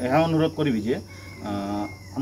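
A man's voice in the first second and again near the end, over a steady high-pitched trill of crickets.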